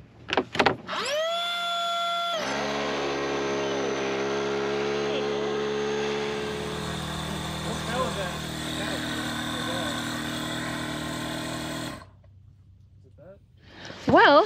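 Battery-powered electric paddleboard inflation pump starting up: its motor whines up in pitch and settles into a steady tone, then switches abruptly to a denser, buzzing hum whose pitch shifts again partway through. It cuts off suddenly about two seconds before the end.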